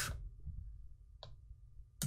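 A single computer mouse click about a second in, against quiet room tone.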